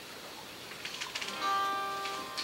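Acoustic guitar: a few light string clicks, then a chord struck about a second and a half in that rings on and slowly fades.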